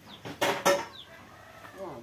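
Two sharp clatters about half a second in, then a chicken clucking with a falling call near the end. Small birds chirp faintly and briefly.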